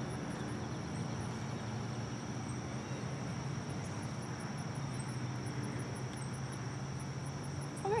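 Outdoor ambience: a steady low hum, with a faint rapid high-pitched ticking running over it.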